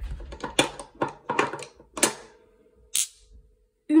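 Large magnetic balls clicking against one another as one is pulled from a pile and snapped onto a hanging chain of small magnetic balls. There are a series of irregular sharp clicks, with the loudest one about two seconds in.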